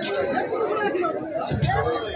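Voices talking in the background: several people's chatter.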